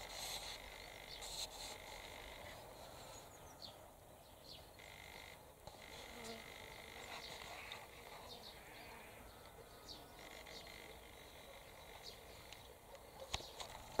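Faint outdoor ambience with a few distant animal calls.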